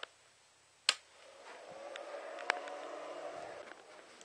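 Handling noise from a handheld camera being moved: a sharp click about a second in, then a faint rubbing rustle for a couple of seconds with another small click in the middle.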